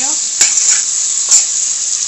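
Diced sausage, salami, onion and peppers sizzling in hot oil in a metal pot while being stirred with a metal spoon, the spoon knocking against the pot twice.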